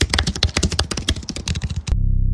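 A fast run of sharp clicks, more than a dozen a second, over a faint low hum. It stops just before the end.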